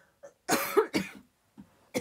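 A woman coughing: two loud coughs close together about half a second in, and a short third cough near the end.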